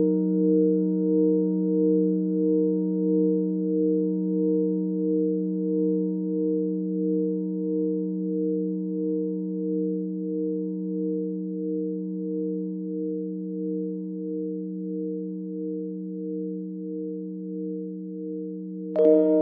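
A sustained ringing musical drone of several held tones with a slow, even wobble, fading gradually, like a long singing-bowl-style tone in the soundtrack music.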